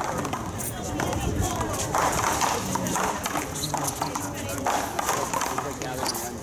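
Paddleball rally: a Big Blue rubber ball repeatedly smacked by paddles and slapping off the concrete wall, sharp hits about a second apart, with people's voices around the court.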